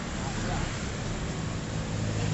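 Street traffic with small motorcycles passing, their engines running over steady road noise.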